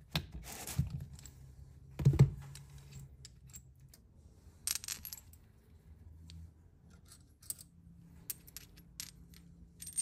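Light metallic clinks and taps of steel washers, a socket and a bolt being handled and fitted on a homemade bolt-and-socket puller, with the loudest clink about two seconds in and a run of small ticks near the end.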